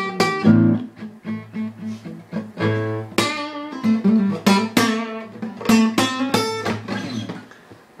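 Acoustic guitar strummed, a run of chords played without singing, which thins out and fades away near the end.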